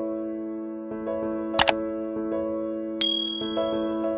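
Soft electric-piano chords held under subscribe-button sound effects: a sharp double click about a second and a half in, then a bright bell-like notification ding at about three seconds that rings on for about a second.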